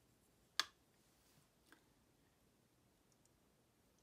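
One sharp click about half a second in, then a faint tap about a second later, over near silence.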